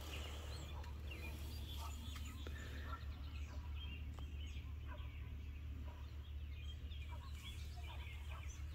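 Faint outdoor birdsong: scattered short bird calls and chirps over a steady low hum.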